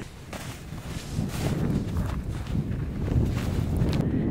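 Footsteps crunching in fresh snow, a few uneven steps in boots.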